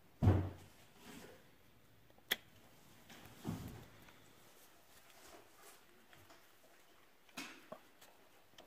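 Knocks and clicks of the new plastic gear set and hub-motor parts being handled and seated on the axle of a Bafang 500W geared hub motor: a dull thump just after the start, a sharp click a little past two seconds, another dull thump about three and a half seconds in, and a couple of small clicks near the end.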